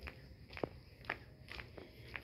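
Faint footsteps of a person walking at an even pace, about two steps a second.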